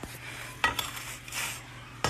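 Knife cutting through a crispy toasted tortilla quesadilla on a wooden cutting board: crackling crunches of the crust, with a few sharp knocks of the blade on the board.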